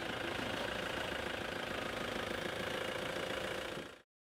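A vehicle engine idling steadily under street background noise, fading out near the end.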